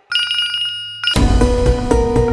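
A mobile phone ringing with an electronic ringtone: a rapidly pulsing high tone that then holds steady. About a second in, it is cut off by background music that starts abruptly, loud and with sustained notes.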